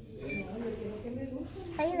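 One short, high beep from an orthodontic LED curing light as it cures the bonding under a brace bracket, over faint background voices. A woman starts speaking near the end.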